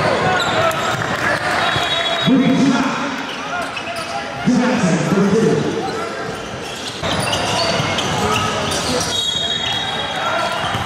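Live game sound from an indoor basketball court: voices of players and spectators talking and calling out, with two louder shouts about two and four and a half seconds in, over a basketball bouncing on the hardwood floor.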